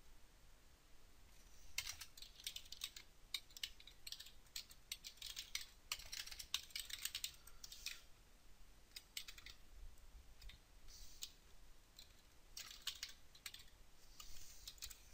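Faint computer keyboard typing, in several quick runs of keystrokes with short pauses between them.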